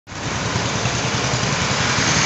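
Scooter engine idling steadily with a low pulsing hum, mixed with road and traffic noise.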